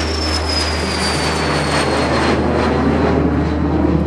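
Twin-engine jet airliner climbing out after takeoff, its engines running at high power. A thin high whine falls slowly in pitch as the plane moves away, over a steady low hum.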